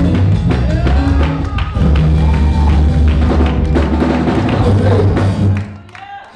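Band music with a drum kit and a heavy bass line playing steadily, cutting off shortly before the end.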